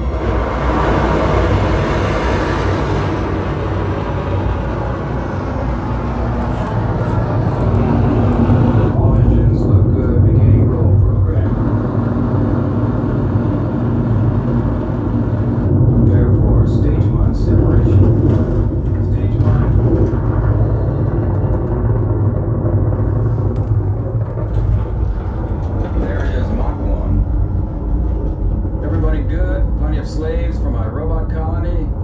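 A film's rocket-launch sound effects played back through Energy Connoisseur CB-10 bookshelf and CC-10 center-channel speakers with no subwoofer, heard in the room. There is a rush of noise in the first few seconds, then a deep steady rumble.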